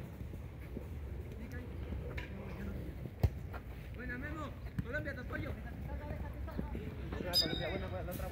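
Distant shouts of players across a football pitch, with one sharp thud of the ball being kicked about three seconds in, the loudest sound here.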